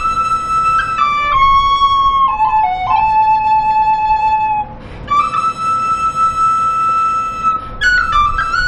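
Tin whistle playing a slow air solo: long held high notes linked by quick grace-note flicks, with a short breath gap about halfway through.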